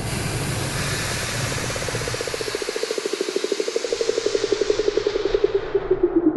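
Sci-fi airlock sound effect: a steady hiss of rushing air that gradually thins and fades. Under it, a fast-pulsing hum grows stronger and drops in pitch near the end.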